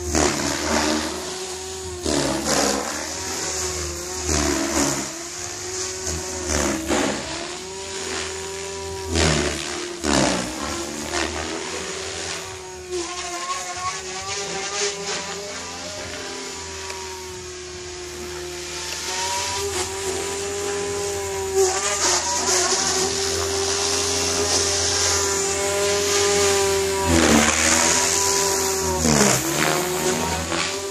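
Electric Goblin 500 RC helicopter in 3D flight: its main rotor and Compass Atom 500 motor give a steady whine whose pitch dips sharply and recovers many times, steadier for a few seconds mid-way and loudest near the end.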